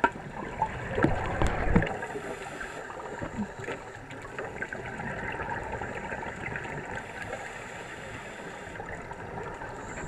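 Underwater sound of scuba divers' exhaled air bubbles, picked up by a diving camera: a louder rush of bubbling about a second in, then a steady hiss with scattered small clicks.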